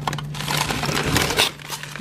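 Plastic bags of frozen food crinkling and rustling as a hand digs through a packed chest freezer, a dense crackle of small clicks that is busiest in the middle, over a steady low hum.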